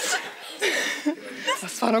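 Women chuckling and laughing in short bursts, with a few spoken words near the end.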